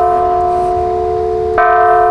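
A large 125-pound hanging bell in a steel sound sculpture ringing with a sustained chord of several steady tones. It is struck again about one and a half seconds in, and the ring swells anew.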